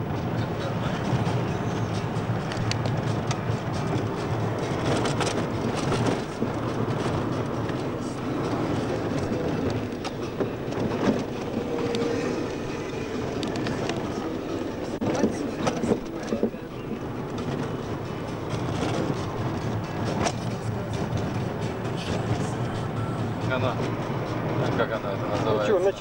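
Steady road and engine noise inside a moving car's cabin, heard through a camcorder microphone, with indistinct voices underneath.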